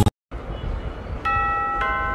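Doorbell chime ringing two notes, the second about half a second after the first, both ringing on.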